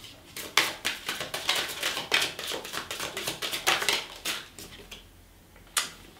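A deck of tarot cards being shuffled by hand: a rapid run of light card clicks and slaps for about four seconds, then it stops, with one more snap near the end.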